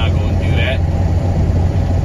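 Steady low rumble of a vehicle driving at highway speed, heard from inside the cab: engine and road noise.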